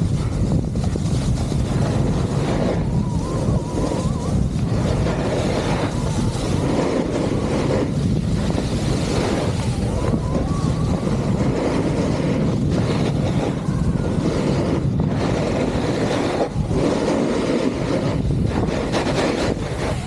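Wind buffeting the microphone while skiing fast downhill, with the skis hissing and scraping over firm snow; the noise is loud and unbroken, with brief dips here and there.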